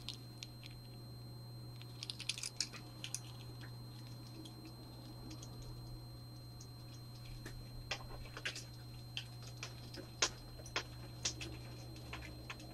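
Faint, scattered light clicks and clinks of costume jewelry and metal pegboard hooks being handled while necklaces are taken from a display, in two loose clusters, over a steady low hum.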